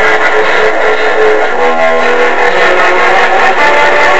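Electric guitar playing a melodic single-note line: one note held for about the first second and a half, then new notes changing pitch every half second or so.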